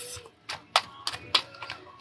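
Tarot cards being handled: a quick run of light, irregular clicks and taps, about half a dozen in a second and a half.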